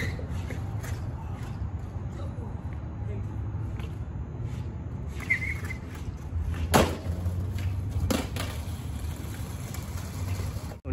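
Skateboard on a concrete wallride: two sharp knocks of the board against concrete, about seven and eight seconds in, over a steady low rumble.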